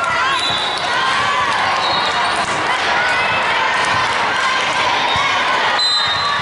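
Busy multi-court volleyball hall: balls hitting hands and the floor, athletic shoes squeaking on the hardwood, and players' and spectators' voices, all ringing in a large echoing room.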